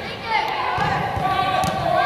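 Footballs kicked on an indoor artificial pitch, two sharp kicks about a second apart, under children shouting and calling across a large hall.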